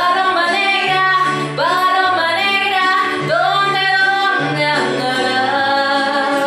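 A woman singing into a handheld microphone, loud long held notes that each swoop up into pitch, four or five phrases in a row, over low steady accompanying notes.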